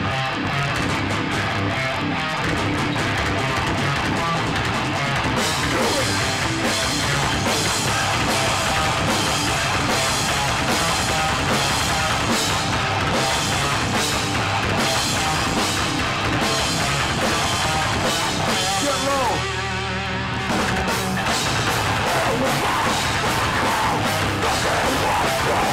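Hardcore punk band playing live: distorted electric guitars, bass and drum kit. About twenty seconds in the drums stop for a moment while a guitar note bends and rings, then the full band comes back in.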